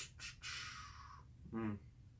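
A man's mouth sounds while he pauses in speech: a couple of lip clicks, a soft breath lasting under a second, then a brief wordless 'uh' sound.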